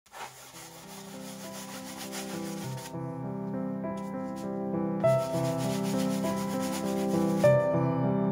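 A wide flat brush dragging acrylic paint across a stretched canvas, a scratchy rubbing in two spells, the first about three seconds long and the second from about five seconds in, over soft piano-like music that grows louder.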